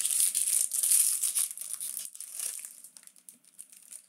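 Foil trading-card pack wrappers crinkling as they are handled and opened, loudest in the first two seconds and dying away to faint rustles after about three seconds.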